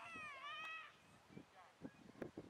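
A single high-pitched voice call, like a child's squeal or shout, lasting just under a second and bending slightly in pitch.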